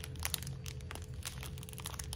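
Clear plastic package of diamond painting drills crinkling as it is handled and turned in the hands: a run of small, irregular crackles over a faint steady hum.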